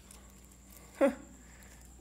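A single brief vocal sound from a person about a second in, falling in pitch, against a quiet room.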